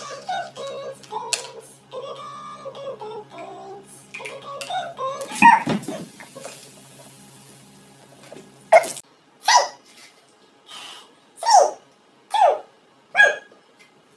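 Cola fizzing as a Mentos sets off the bottle: a loud onset a little over five seconds in, then a hiss that fades over about two seconds. Before it come voice-like sounds, and after it about five short sounds that each fall in pitch.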